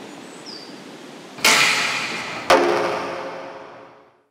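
A Japanese kyudo bow is released, with a sudden loud snap of the string and the arrow's rush that fades over about a second. Then the arrow strikes the target with a sharp crack that rings briefly. Faint bird chirps sound in the quiet before the release.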